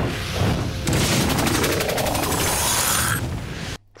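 Cartoon sound effect of a creature's armour closing around it: a hiss with a rapid run of ratchet-like clicks and a rising sweep, starting about a second in and cutting off abruptly just before the end.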